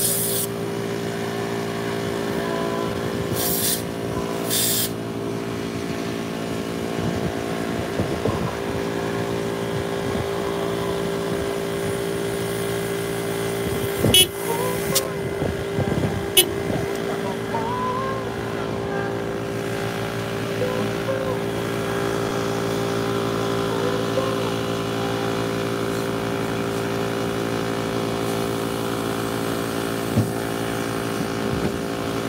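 A steady motor drone made of several even tones, with two short hisses about four seconds in and a few sharp knocks around the middle.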